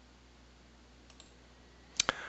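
Quiet room tone with a steady low hum, a faint click about a second in and a sharper click right at the end.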